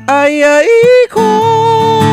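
A man sings a Hawaiian song to acoustic guitar. He holds a note that leaps up to a higher pitch while the guitar drops out. The strummed guitar comes back in about a second later under the next held note.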